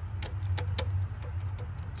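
Scattered light metallic clicks as pliers push and rattle the loose double-row timing chain of a Mercedes OM642 diesel against its camshaft sprocket: the chain is worn and slack on the sprocket. A steady low hum runs underneath.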